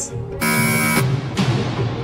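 Game-show buzzer sounding once for about half a second, marking a contestant's pass, over tense background music with a steady low beat.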